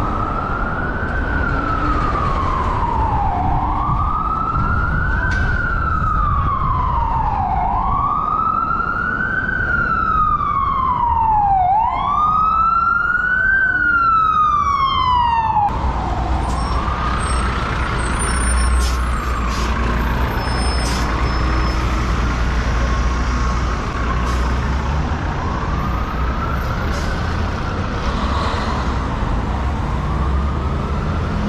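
Emergency vehicle siren in a slow wail, rising and falling in pitch about every four seconds over city traffic. About halfway through it suddenly turns fainter, and a heavier low rumble of traffic and motion comes to the fore.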